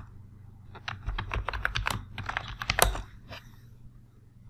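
Computer keyboard typing: a quick run of key clicks starting about a second in and stopping near the end, with one louder keystroke among the last.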